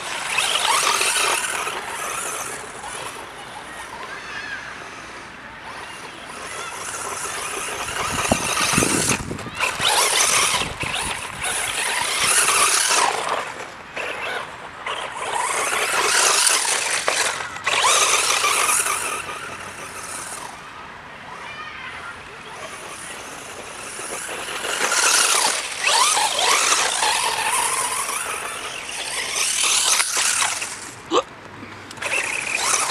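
FTX Vantage 1:10 buggy's 2950kv brushless electric motor whining, with its tyres spraying loose gravel as it drives around a pit. The sound rises and falls several times as it comes near and goes away.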